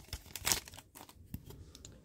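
The crinkly wrapper of an already-opened Upper Deck hockey card pack being handled as cards are pulled out of it: short rustles, loudest about half a second in, then fainter crinkles and light ticks.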